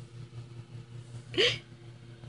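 A person's voice makes one short, breathy, hiccup-like squeak about a second and a half in, over a faint steady hum.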